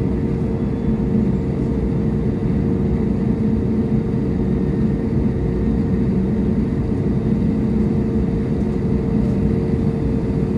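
Airbus A321neo's CFM LEAP-1A turbofan engines running at low idle, heard inside the cabin as a steady low rumble with a constant hum.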